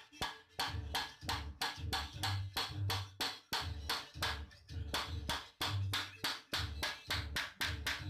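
Rapid hammer blows on a steel pipe used as a drift, driving a bearing onto the shaft of a deep well pump motor, about four strikes a second in a steady rhythm, each with a dull thud through the motor and bench.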